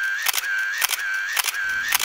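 Camera shutter clicking, about four times at roughly half-second intervals, with a steady high tone between the clicks.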